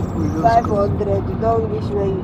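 People's voices talking over a steady low rumble.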